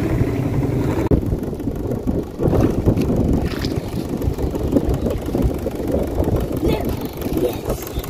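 Small outboard motor on an inflatable dinghy running at low speed, under an uneven low rumble of wind and water.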